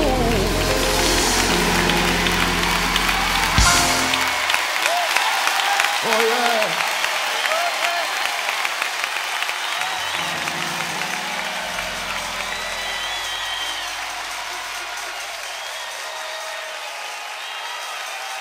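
Live gospel audience applauding and calling out as the band holds its final chord, which ends with one last hit a few seconds in. The applause and shouts then continue alone and slowly fade.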